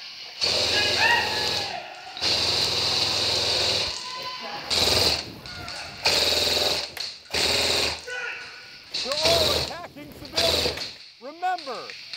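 Belt-fed airsoft electric support gun firing on full auto: about six long bursts, each lasting from under a second to nearly two seconds, with short pauses between them.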